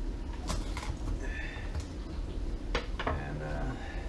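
Chef's knife cutting green beans on a wooden cutting board: a few separate sharp knocks of the blade on the board, one about half a second in and two close together near three seconds.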